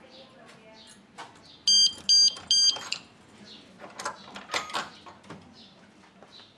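Three short, loud electronic beeps in quick succession about two seconds in, followed by metallic clicks and clinks of keys working a padlock as a door is unlocked.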